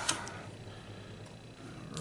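A brief rustle of a paper scratch-off lottery ticket being handled near the start, then faint steady room hiss.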